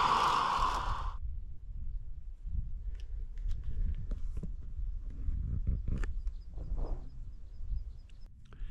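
Camping gas stove burner hissing steadily, cut off suddenly about a second in. After that, wind buffets the microphone with a low rumble and a few faint clicks and knocks.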